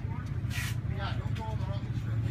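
Men talking over a steady low hum.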